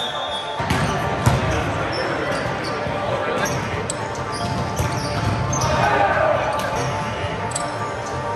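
Indoor volleyball rally in a gymnasium: repeated sharp hits of the ball against hands and the court, with players' voices calling out.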